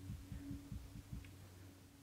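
Faint steady low hum with soft low pulses, several a second: background tone of the interview recording in a pause between speakers.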